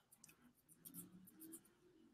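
Near silence: room tone, with a few faint soft sounds about halfway through.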